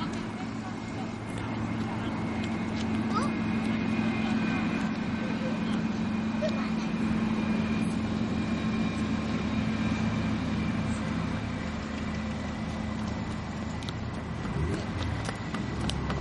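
A steady engine drone that grows louder over the first few seconds and eases off in the last few.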